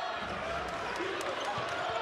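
Arena crowd noise with a basketball being dribbled on a hardwood court, a few bounces heard over the steady crowd.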